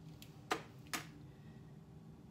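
Two sharp clicks about half a second apart as broken eggshell halves are handled and set down, shell against hard plastic or shell.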